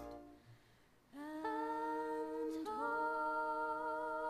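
After a moment of near silence, a voice holds two long wordless notes, each sliding up into pitch at its start; the second, slightly higher, begins about halfway through.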